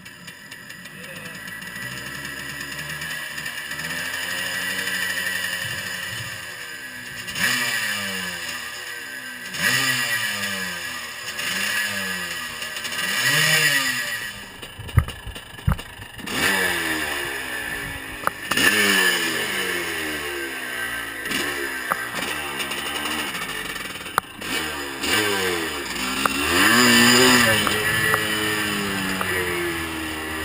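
1982 Husqvarna WR 430 two-stroke single catching and running after about four years in storage, on its old plug and uncleaned carburettor. The throttle is blipped over and over in rising and falling revs, with a short drop and a couple of sharp knocks midway, then it pulls away under load near the end.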